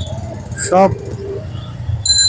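Motorcycle engine running low and steady while the bike creeps through slow, dense traffic, heard as a continuous low rumble under a single spoken word.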